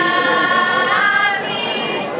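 A women's folk choir sings a Hungarian folk song unaccompanied, holding long notes together, with the melody stepping up in pitch about halfway through.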